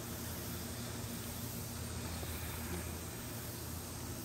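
Steady low background hiss with a faint low rumble underneath, unchanging and with no distinct event.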